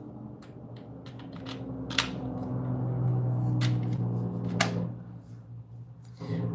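Small objects handled on a desk: three sharp clicks or knocks spread over a few seconds, over a low steady hum that swells in the middle.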